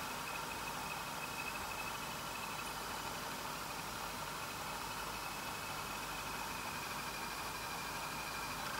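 Steady faint hiss of background room tone with a thin high whine running through it; no distinct event.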